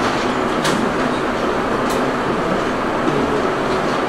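Steady rushing background noise with no clear pitch, and a couple of faint clicks about one and two seconds in.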